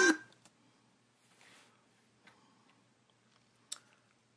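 Sound from a playing video cuts off just after the start, leaving near silence in a small room, broken by a faint brief rustle about one and a half seconds in and a single short sharp click near the end.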